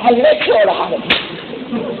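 A voice speaking briefly, then a single sharp click about a second in, with quieter speech after it.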